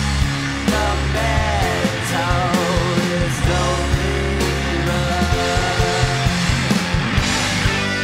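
Live garage-rock band playing: distorted electric guitars, bass and drums, with a male lead vocal singing over them.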